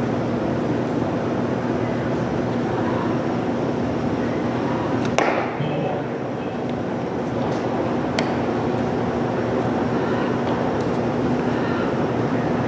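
A pitched baseball smacks into a catcher's mitt with one sharp pop about five seconds in, and a fainter click follows about three seconds later. Steady ballpark background noise with a low hum runs underneath.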